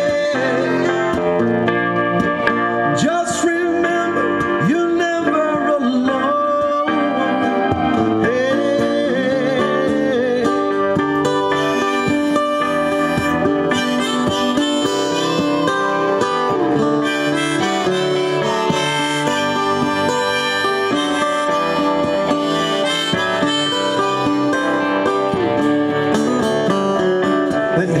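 Instrumental break of a live acoustic-electric band: strummed acoustic guitar, Roland Juno-G keyboard and electric lead guitar playing together, with a lead line of sustained notes that bend in pitch.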